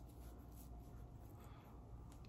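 Near silence: faint room hum with light, scattered rustling of hands handling wig hair.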